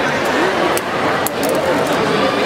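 Crowd of spectators chattering, many voices overlapping into a steady babble, with a few brief clicks about a second in.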